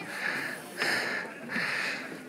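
A man breathing hard through the mouth, about three heavy breaths: he is out of breath and lightheaded from climbing stairs in the thin air at high altitude.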